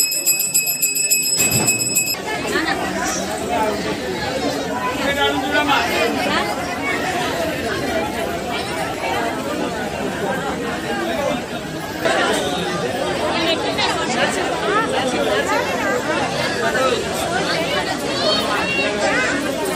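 A puja hand bell rung rapidly and steadily, stopping about two seconds in. Then the chatter of a crowd of many people talking at once.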